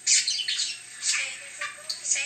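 Budgerigar chattering: a quick run of short chirps and squawky warbles, loudest right at the start.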